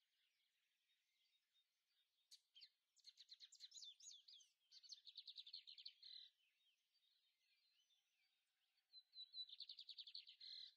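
Faint songbird singing: several phrases of rapid, high chirping trills starting about two seconds in, a pause, then another trill near the end.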